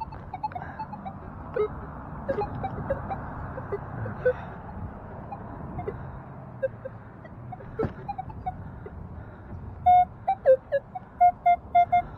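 Metal detector giving short electronic target beeps, scattered at first, then a quick run of loud repeated beeps near the end as it is passed over the freshly dug hole to check the target. Digging noises sit underneath, with a single sharp knock about eight seconds in.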